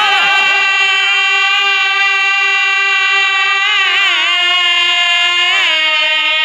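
A male birha singer holds one long sung note over a steady harmonium, with a wavering ornament about four seconds in and a small step down in pitch near the end; the drum is silent.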